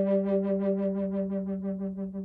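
Native American-style contrabass G/C Aeolian drone flute of aromatic cedar and buckeye burl holding one low G note, its cork twisted to seal for the G drone. The tone wavers quickly in strength and slowly fades towards the end.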